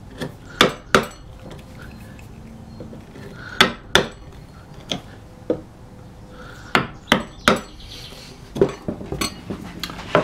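Steel bevel-edged chisel chopping and breaking out waste wood between bored holes in a mortise in oak. Sharp knocks and clicks come in pairs and short runs, about a dozen in all.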